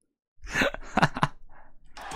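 A man coughing: three short coughs in quick succession starting about half a second in, then a fainter one.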